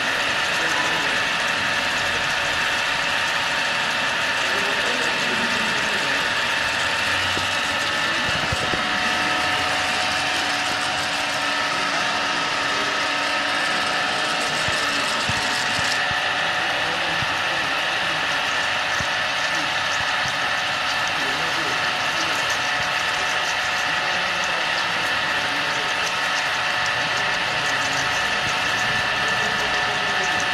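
8-axis CNC machine running a pitch-circle drilling cycle in automatic mode on a large casting: a steady machine noise with several held whining tones over a light mechanical rattle. The high hiss drops about halfway through.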